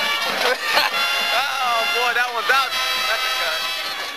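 Voices talking over background music, all fading out at the very end.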